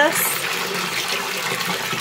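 Bath tap running into a filling bathtub, a steady rush of water pouring into water.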